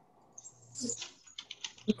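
Computer keyboard typing, a run of irregular clicks, picked up by a video-call microphone. It starts about half a second in, and a voice begins right at the end.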